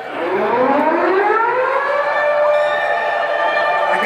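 Air-raid siren sound effect over a concert PA: a wail that starts low, rises in pitch for about two seconds, then holds steady.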